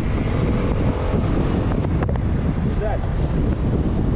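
Wind rushing over the helmet-mounted microphone while riding, with the Revolt Volta RS7 scooter's 125cc GY6-type fuel-injected single-cylinder engine running steadily underneath at about 35–40 km/h.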